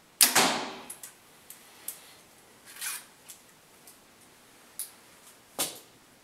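Compound bow shot: the string is released with a loud snap and a ringing tail that dies away in under a second. It is followed by a few smaller clicks and a brief rustle as the bow is handled.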